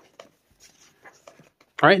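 Pages of a matte-paper trade paperback being turned by hand: a few faint, short paper rustles and flicks. A man's voice starts near the end.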